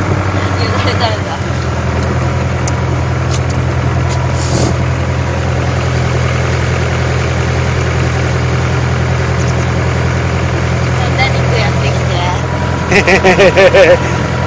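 A small boat's motor running steadily under way, a low even drone whose note steps up about a second in as the throttle is opened.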